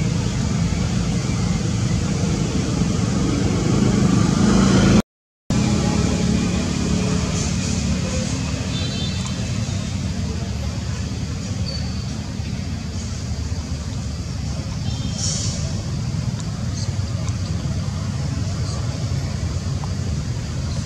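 Steady low outdoor rumble, with a few faint high chirps here and there. The sound drops out for half a second about five seconds in.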